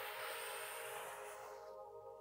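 Quiet, slow background music of held, sustained tones. A soft breathy hiss over the first second and a half, fading out, fits a long exhale during the stretch.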